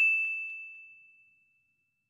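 A single bright ding, a chime sound effect for the animated '+1 Like' button, ringing and fading away over about a second.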